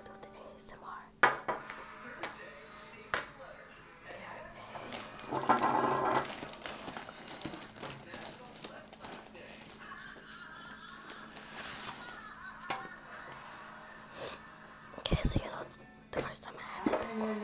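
Quiet whispering with scattered sharp clicks and knocks, and faint music underneath; a louder stretch comes about five seconds in and a loud knock near the end.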